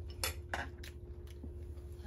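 A few sharp clinks of cutlery against ceramic bowls and dishes, in the first second, over a low steady hum.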